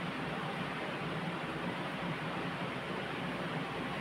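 Steady background room noise with no speech: an even hiss with a low hum underneath.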